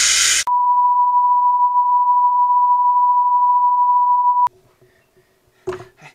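A brief burst of TV static hiss, then a steady high-pitched beep tone held for about four seconds that cuts off suddenly: a 'technical difficulties' test-tone effect.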